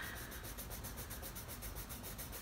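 Faber-Castell Polychromos coloured pencil rubbing faintly across Moleskine sketchbook paper as an arc is shaded in.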